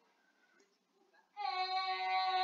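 Near silence, then a little past halfway a high voice starts holding one steady sung note.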